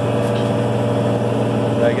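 Case 4890 four-wheel-drive tractor's diesel engine running steadily under load while pulling a disk chisel through corn stalks, heard from inside the cab.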